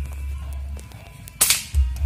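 An air rifle fires a single sharp shot about one and a half seconds in, over background music with a deep bass beat.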